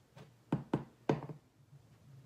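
Small hard objects knocking: four quick knocks within about a second, the last three loudest.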